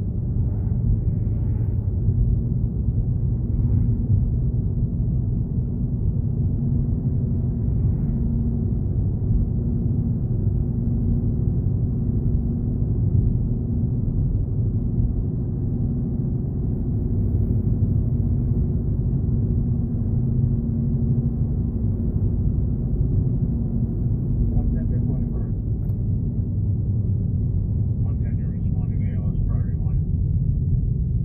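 Steady low rumble of a car's tyre and engine noise heard inside the cabin while driving, with a constant low hum.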